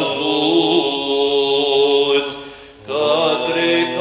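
Romanian Orthodox liturgical chant of Matins in the seventh tone, sung in long held notes with small melodic turns. It breaks off briefly about two and a half seconds in and resumes.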